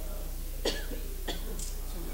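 A person coughing twice, short and sharp, about half a second apart, over a steady low electrical hum.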